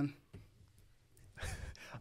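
A short breath or sigh close to a microphone, about a second and a half in, after a near-silent pause in the talk.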